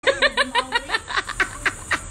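A woman laughing: a quick run of short laughs that slows and fades towards the end.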